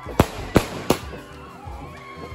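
Fireworks going off: three sharp bangs in quick succession within the first second, over a continuing background.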